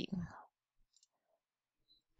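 A voice trails off in the first half-second, then near silence with only a couple of faint, brief specks of sound.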